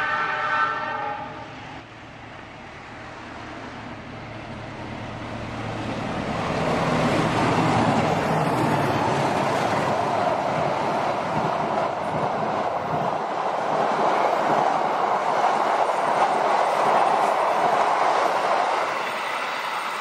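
A CC206 diesel-electric locomotive sounds its horn once, a held tone of a second or two at the start. Then the Argo Semeru express passes at speed without stopping, a rushing clatter of wheels on rail that builds over several seconds, stays loud and eases a little near the end.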